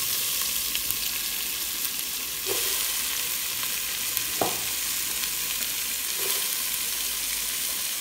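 Sliced onions frying in melted butter in a nonstick pan, a steady sizzling hiss, with three short knocks from stirring against the pan.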